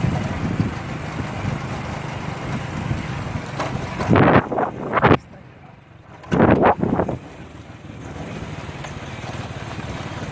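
Steady road and engine rumble of a moving car heard from inside the cabin. A few loud, short noisy bursts break in between about four and seven seconds in, with a quieter stretch among them.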